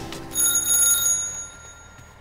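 A single bright bell ding, struck once about a third of a second in and ringing out over about a second and a half.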